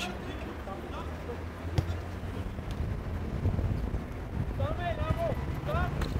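Open-air ambience of a football pitch: a steady low wind rumble on the microphone, a single sharp knock about two seconds in, and faint distant voices calling out near the end.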